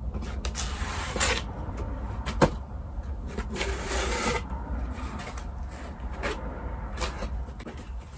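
Cardboard shipping box being opened by hand: its pre-slit flaps are pulled apart and folded back, with irregular rubbing and scraping of cardboard and a few sharp clicks, the sharpest about two and a half seconds in.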